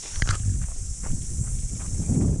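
Low rumbling and irregular thumps of movement right at the camera's microphone, starting just after the beginning, over a steady high hiss.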